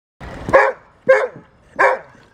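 A dog barking three times, short loud barks roughly two-thirds of a second apart.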